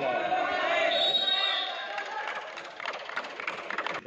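Wrestling spectators shouting and cheering over one another. About halfway through the shouting gives way to a run of sharp, irregular claps.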